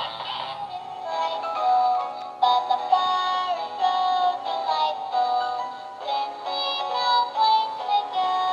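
Animated plush Christmas toy playing a recorded Christmas song with singing through its small built-in speaker. About a second in, one toy's tune gives way to another.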